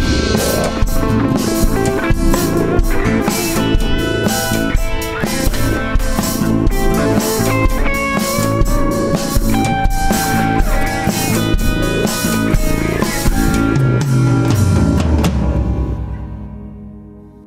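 Instrumental modern jazz with a drum kit and guitar playing a steady groove.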